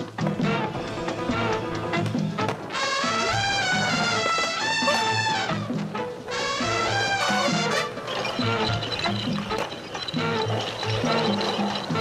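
Background music with a steady beat; a pitched melody line comes in about three seconds in, breaks off, and returns around six seconds in.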